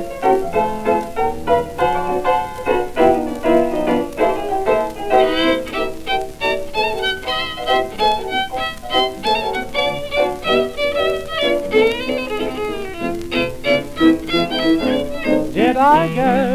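A 1920s dance orchestra playing an instrumental chorus of a foxtrot, with no singing, as transferred from a 78 rpm record. The melody turns to quick runs of short notes from about five seconds in.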